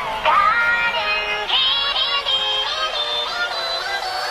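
Sped-up song: music with high, pitched-up singing.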